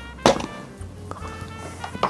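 Soft background music, with a sharp plastic clack about a quarter second in and a couple of lighter knocks after it, as a personal blender's plastic cup is handled and twisted apart.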